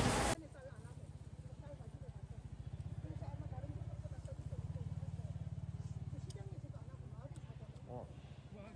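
Market ambience: faint distant voices over a low hum with a fast, even flutter, after a loud moment that cuts off abruptly at the very start.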